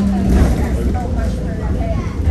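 Cabin sound of a moving single-deck city bus: a steady low engine and road rumble, with passengers' voices talking over it.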